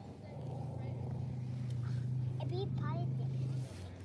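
A motor vehicle's engine running with a steady low hum. It starts about half a second in and stops shortly before the end.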